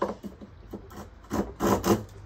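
Small wooden hand plane, its blade held by a loose wooden wedge, being pushed along a block of softwood stud timber. The blade scrapes at the start, then two more rasping strokes follow near the end as it takes off shavings.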